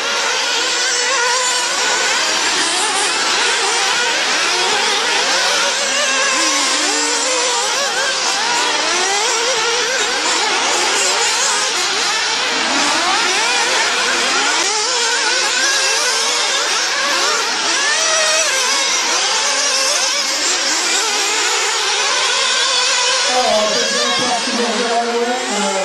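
Several 1/8-scale nitro off-road RC buggies racing, their small glow-fuel two-stroke engines revving up and falling away in many overlapping high-pitched whines.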